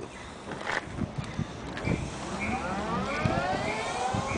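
Vectrix electric scooter's drive motor whining as the scooter pulls away, the whine rising steadily in pitch as it accelerates from about halfway in.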